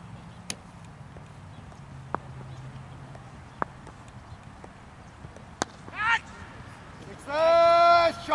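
A cricket bat strikes the ball on delivery with one sharp crack a little past halfway. Players then shout, with a short call and then a loud, long shout near the end.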